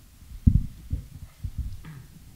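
Several dull, low thumps at irregular intervals, the loudest about half a second in, picked up through a table microphone on a desk stand, as from the microphone or table being bumped or handled.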